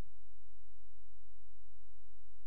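A steady low electrical hum with a stack of higher buzzing overtones, unchanging throughout, with no speech or music over it.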